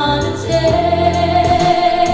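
A woman singing into a microphone over musical accompaniment, holding one long steady note from about half a second in.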